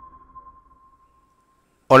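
The tail of an intro music sting: one sustained high ping-like tone dying away over about a second and a half, then silence. A man's voice starts just at the end.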